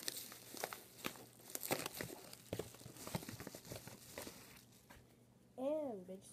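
Paper mailer envelope crinkling and rustling as it is handled, a dense run of irregular crackles that dies away after about four and a half seconds. A short voiced sound comes near the end.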